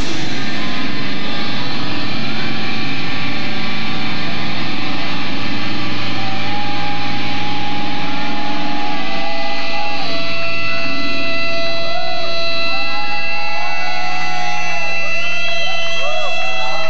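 Electric guitars left ringing and feeding back through loud amplifiers as a live sludge metal song breaks down. Several steady high tones hold, and wavering, bending tones join them near the end.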